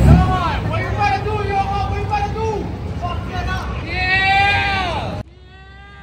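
A raised voice calling out in long, drawn-out sliding notes over the deep rumble of a car engine idling at the drag-strip start line. A loud jolt of low rumble right at the start; both sounds cut off abruptly about five seconds in.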